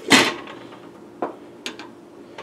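A sharp clatter of steel saucepans and utensils handled on an electric stovetop right at the start, followed by a few light taps as a plastic spoon is laid down on the stove.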